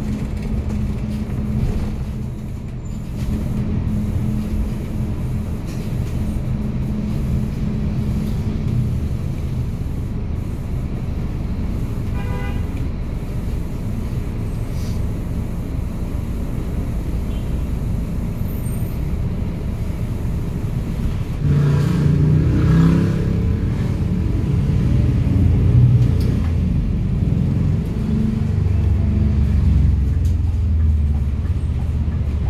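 Inside a city bus in slow, stop-start traffic: a steady low rumble of running and road noise. A short horn toot comes about twelve seconds in, and a louder pitched hum rises briefly a little after twenty seconds.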